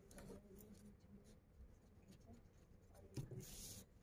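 Faint scratching of a pencil on a sheet of drawing paper, with a soft thump about three seconds in and a longer pencil stroke near the end.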